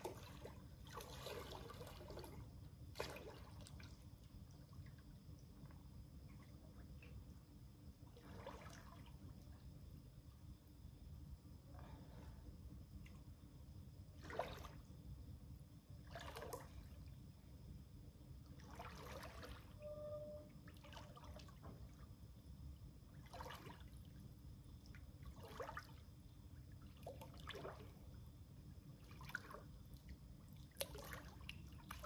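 Faint soft splashes and lapping water from a person swimming slowly in a pool, coming irregularly every second or two over a steady low hum.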